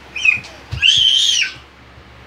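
A toddler's high-pitched squeal: a short one, then a longer, louder one a moment later that rises and falls in pitch.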